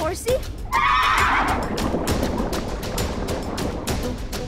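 A horse-like whinny from a cartoon sea horse: a loud, quavering call about a second in that trails off, over background music with a steady beat.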